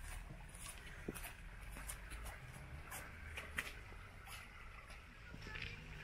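Footsteps on a stone-paved path, a faint, irregular run of light clicks at walking pace, over a low steady rumble.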